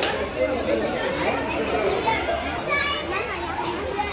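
Overlapping children's voices and visitor chatter, with a brief high-pitched cry about three seconds in.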